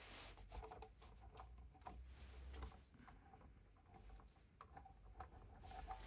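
Near silence, with scattered faint clicks and taps from hands handling a small RC truck.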